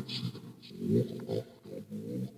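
Hell Box ghost box app sweeping through a reversed-speech sound bank, played through a Bluetooth speaker. It gives short, choppy snatches of garbled backwards voice with small gaps between them.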